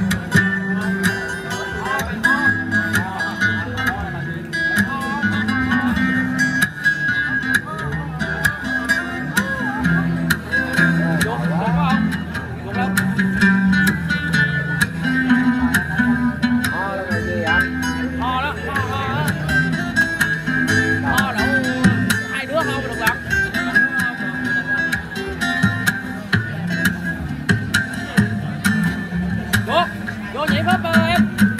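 Acoustic guitar, plugged in and amplified, playing a song with changing bass notes and chords, with voices alongside.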